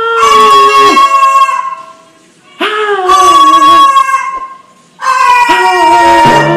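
White cockatoo calling: three long, loud, drawn-out cries, each lasting a second or more and falling slightly in pitch, with short breaks between them.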